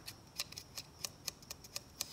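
Quick, faint finger flicks on the back of a foil reagent packet, about five or six light ticks a second, shaking the calcium reagent powder down into a glass sample vial.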